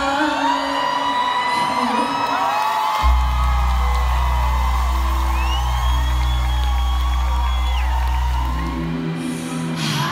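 Live concert music over a loud arena sound system with the crowd cheering and whooping. About three seconds in a deep bass note comes in and holds steady until near the end.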